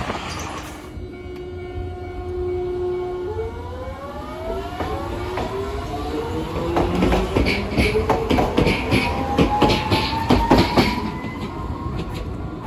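Hiroshima Electric Railway 3900-series articulated tram accelerating past close by: its motors whine in several tones that climb steadily in pitch. In the second half its wheels clack over the rail joints as the cars go by.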